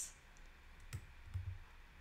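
A few faint, scattered computer keyboard key clicks.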